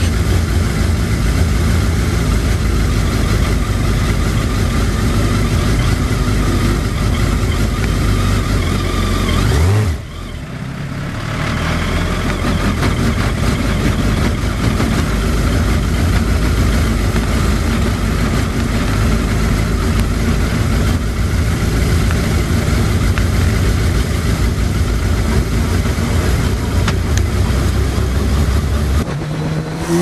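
A car engine running steadily at a constant speed, with a brief drop about ten seconds in. Right at the end the engine note begins to rise as it revs up.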